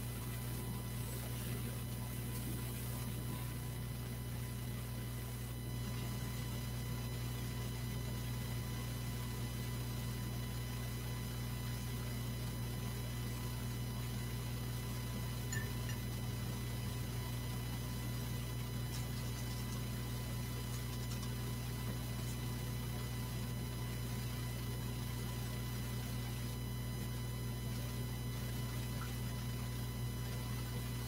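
Steady low electrical hum with faint high, steady tones above it, unchanging throughout; one small click about halfway through.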